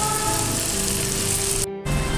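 Marinated chicken pieces sizzling as they fry in melted butter in a nonstick frying pan, a steady hiss that cuts out for a moment near the end.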